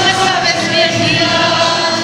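Mariachi band playing with voices singing over it, the notes held long and steady.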